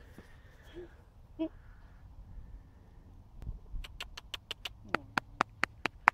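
A quick run of sharp clicks, about four a second, starting about four seconds in, after a few faint short sounds.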